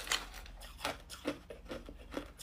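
Hard clear ice being chewed: about five short, sharp crunches as the chunks crack between the teeth.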